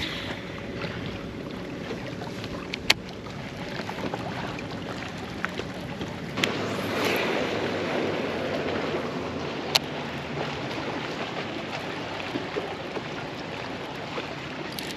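Choppy lake water lapping against a small fishing boat, with wind on the microphone; the rush of water and wind swells louder about halfway through. A few sharp clicks sound over it.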